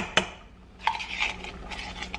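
Metal utensil scraping tomato paste out of a small metal can over a pot: a sharp clink right at the start, then softer scraping through the second half.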